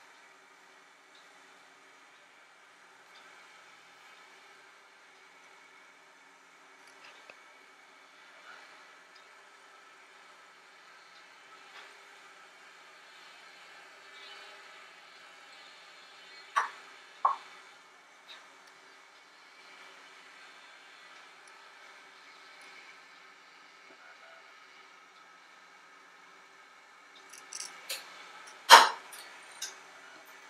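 Metal clinks against a steel cake pan over a faint steady hum: two sharp knocks a little past the middle, then a cluster of clinks near the end, the loudest about a second before it stops.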